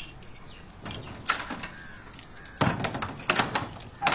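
A series of sharp knocks and bangs: a few about a second in, then a louder, quick run of them from about two and a half seconds.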